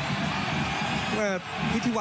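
Football stadium crowd cheering a goal, a steady dense wash of crowd noise, with a male commentator's voice coming in over it about a second in.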